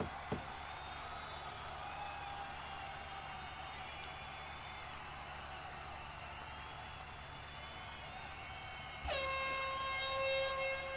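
Faint arena background of crowd noise and distant voices. About nine seconds in, a loud horn sounds at one steady pitch and holds: the signal that ends the MMA round.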